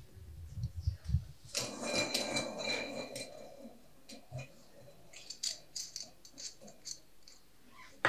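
Small plastic draw balls rattling and rolling against a glass bowl, with a faint ringing from the glass, after a few dull knocks at the start. Then a scatter of light clicks and taps as the ball capsules are handled and opened.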